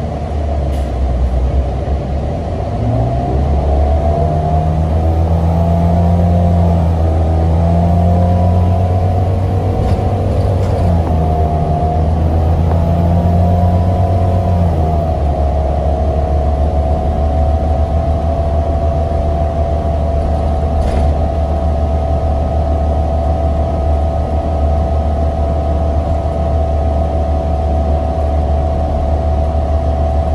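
NABI 42-BRT transit bus heard from inside the passenger cabin: the engine pulls hard with its pitch climbing for the first half as the bus gathers speed, then settles about halfway through into steady cruising with a constant whine over the road rumble.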